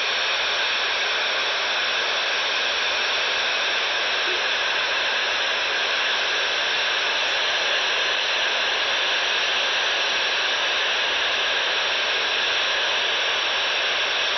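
Steady static hiss from a shortwave receiver tuned to 28.135 MHz FM, with no voice on the channel.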